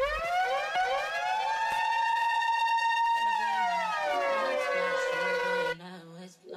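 Siren-style sound effect opening a DJ mix: a few quick upward whoops, then a long tone that rises, holds and slides back down before cutting off suddenly near the end. A low stepping bass line comes in under it about halfway through.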